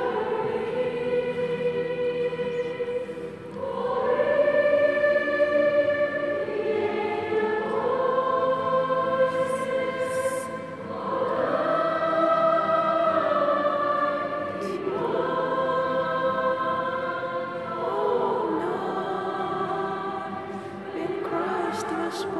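Church choir singing a slow hymn in long held notes, with brief breaks between phrases.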